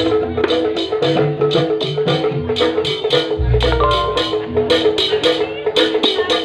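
Javanese-style percussion music: mallet-struck tuned metal or wooden instruments and drums playing a fast, even beat of about five strokes a second. Deep low booms recur every second or two.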